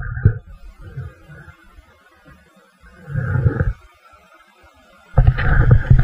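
Gusty low rumble of wind buffeting and handling noise on a handheld camera's microphone, with a burst about three seconds in and a louder one near the end.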